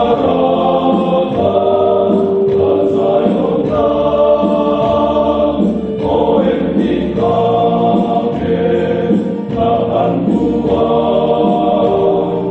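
A group of older men singing together in parts, unaccompanied voices holding each note for a second or two before moving on together.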